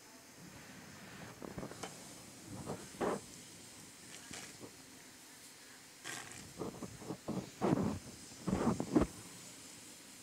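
Steady hiss of a glassblowing hot shop, with irregular close rustles and soft knocks coming in two clusters, about one and a half to three seconds in and again from six to nine seconds in.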